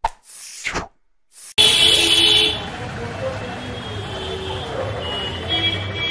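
A short swish of a sound effect, then a brief silence, then from about a second and a half in, the steady noise of a busy town street with traffic. The street noise is loudest as it begins.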